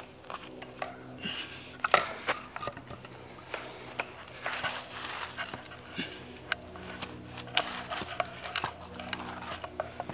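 Scattered sharp clicks, creaks and scrapes as steel trellis wire is levered tight with a 2x4 board against a wooden post, the wire and wood rubbing and shifting under the strain. The loudest click comes about two seconds in.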